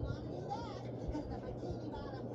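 An excited cartoon voice played through a TV speaker and picked up in the room, over a steady low hum.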